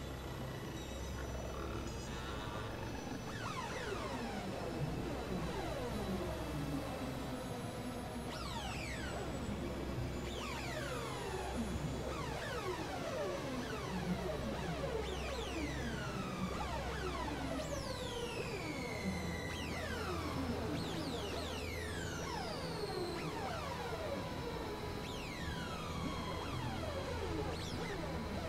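Experimental electronic synthesizer music: a steady low drone under many overlapping falling pitch sweeps, which pile up from about three seconds in.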